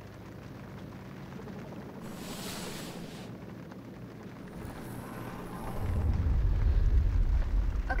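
A short hissing whoosh about two seconds in, then a deep rumble that swells up about two-thirds of the way through and keeps building: an ominous horror-film rumble answering the call to the spirits.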